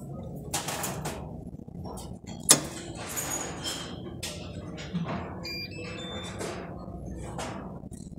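A capsule-counting machine being switched on: scattered clicks and knocks, with one sharp, loud click about two and a half seconds in, over workshop background noise.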